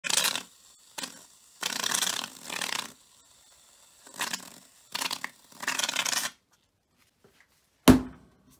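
Nivea Men shaving foam aerosol can spraying foam into a plastic cup in several hissing bursts, the longest over a second. Just before the end comes a sharp knock as the can is set down on the bench.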